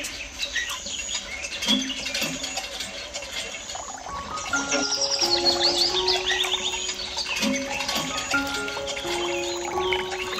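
Gentle background music with birds chirping over it, including a quick run of chirps about five seconds in.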